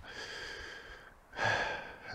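A man breathing heavily, out of breath from a steep climb: a long, softer breath, then a louder one a little past halfway.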